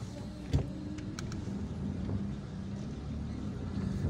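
Car engine and road noise heard from inside the cabin as the car creeps forward in slow traffic, a steady low hum. A single sharp click sounds about half a second in, with a couple of faint ticks soon after.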